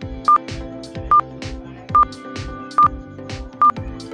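Quiz countdown timer sounding five short, high beeps a little under a second apart as the answer time runs out, over background music with a steady beat.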